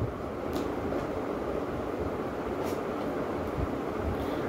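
A tarot deck being shuffled by hand: a steady rustle of cards sliding over one another, with a couple of faint clicks.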